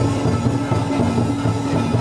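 Loud music with a steady pulsing beat under held notes.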